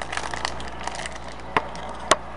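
Handling noise: a rapid run of small crackles and clicks, with a sharper click about one and a half seconds in.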